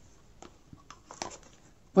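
A few light taps and clicks of hollow eggshells being handled and set down on a tabletop by a cardboard egg carton.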